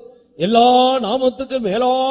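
A man praying aloud in a chanted, sing-song voice held mostly on one pitch, starting again after a brief pause at the start.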